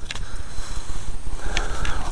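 Low rumble of wind and handling noise on a hand-held camera's microphone while the camera is being carried, with a short hiss about three-quarters of the way through.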